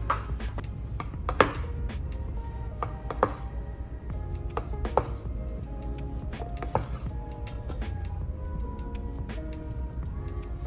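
Chef's knife slicing through a loaf of olive oil cake on a wooden cutting board, the blade knocking on the board about every two seconds, the sharpest knock about a second and a half in. Background music plays throughout.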